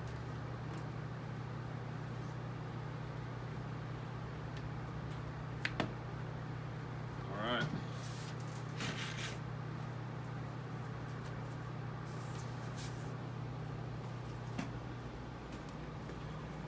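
Handling of a sealed vinyl LP being opened: a couple of sharp clicks, then brief rustles of plastic shrink-wrap and a paper inner sleeve as the record is slid out of its jacket, over a steady low room hum.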